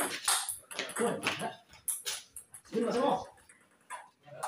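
Table tennis rally: a quick run of sharp clicks as the celluloid ball strikes the paddles and table. Two short yelps come in between, one about a second in and a longer one near three seconds.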